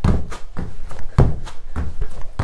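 Trainer-clad feet landing on a foam exercise mat over a wooden floor as both legs jump in and back out together in double-leg mountain climbers: a rapid, unbroken run of heavy thuds, about three a second.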